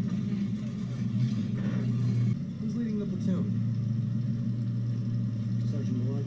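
Army truck engine running with a steady low rumble, dipping briefly about two and a half seconds in.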